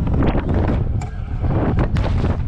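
Strong wind rumbling on the microphone as a stunt scooter rolls fast down a wooden ramp, with two sharp knocks, about a second in and just before the end.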